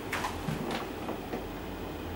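Quiet pause: room tone with a steady low hum, and a few faint soft clicks in the first second.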